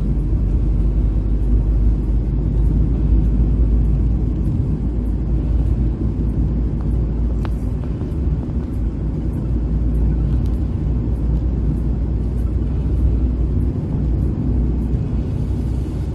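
Car driving at road speed heard from inside the cabin: a steady low rumble of engine and tyre noise.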